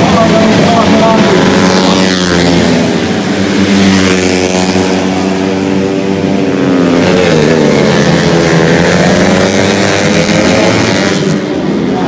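Yamaha Jupiter four-stroke underbone race motorcycles running at high revs, several engines at once. Engine pitch drops sharply about two seconds in and again around seven seconds, as the bikes pass and brake, then climbs again.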